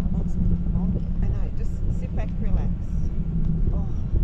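Steady low rumble of wind buffeting the camera's microphone on a parasail high above the water, with faint, unclear voices from the riders now and then.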